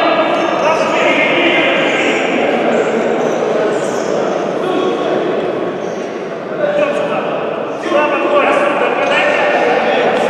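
Voices calling out across a reverberant indoor futsal hall, with a few sharp knocks about two-thirds of the way in.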